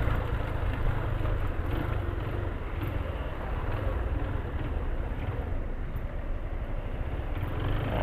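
Yamaha Fazer 250 motorcycle engine running steadily at low speed while filtering between stopped cars, with a strong low rumble and surrounding traffic noise.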